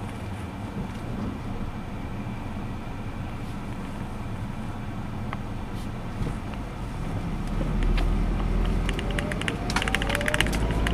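Car engine and road rumble heard from inside a taxi's cabin. About seven seconds in, the engine note rises steadily as the car pulls away and accelerates. Near the end comes a quick flurry of sharp clicks.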